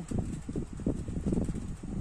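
Handling noise close to the microphone: low, irregular rustling and bumping as a small die-cast toy car is turned over in the fingers.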